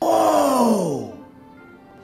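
A cartoon panda character's voice letting out one long groan that slides down in pitch over about a second and then fades.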